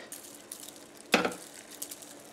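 Rock salt shaken from a glass jar onto a bowl of popcorn: one brief rattle about a second in, followed by a few faint ticks.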